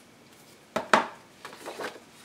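Hands handling craft materials on a work table: one sharp knock about a second in, followed by a few quieter rustles and taps.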